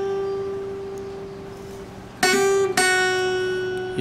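Single melody notes on an acoustic guitar's first string. A held note fades out, then about two seconds in a note is picked, and a second follows about half a second later and rings on. These are the opening notes of the tune, fretted at the second and third frets.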